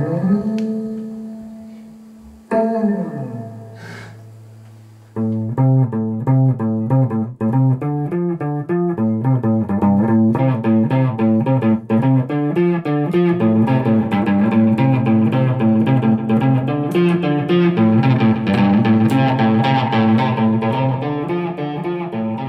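Guitar music: a strummed chord rings out and fades, a second chord follows a couple of seconds later, and then from about five seconds in a fast picked guitar pattern plays steadily.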